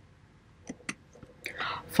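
A quiet pause in a man's voice-over: two small mouth clicks about a second in, then a breath drawn in before he speaks a word at the very end.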